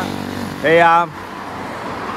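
Motorbike passing close on the highway, its engine note falling as it goes by, then the tyre noise of a car coming up close.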